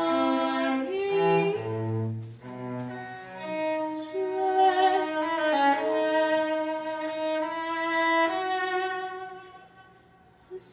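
Solo cello played with the bow: a slow passage of low notes, then long held higher notes, dying away near the end.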